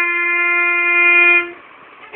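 Violin playing one long held bowed note, which stops about three-quarters of the way through, leaving a brief gap.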